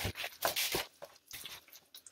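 Gloved hands pulling apart tender smoked pork shoulder in an aluminium foil pan: a run of short, irregular tearing and squelching sounds of the meat and pan, sharper in the first second and fainter after.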